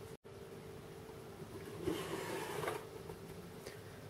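Faint rustling and scraping of a cardboard model-kit box and the paper inside being handled, with a couple of slightly louder rustles near the middle, over a low steady hum.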